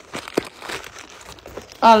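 Faint rustling and crinkling with a few small clicks during a pause in talk. A woman's voice starts again near the end.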